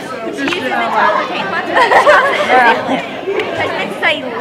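Chatter: several young people talking over one another in a large hall.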